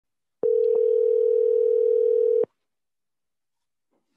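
Telephone ringback tone of an outgoing call: one steady ring about two seconds long that starts about half a second in and cuts off sharply. The call is ringing, waiting to be answered.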